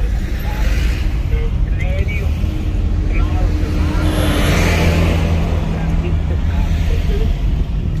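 Engine and road rumble inside a moving car's cabin, steady throughout, swelling around the middle as the car drives close past a truck.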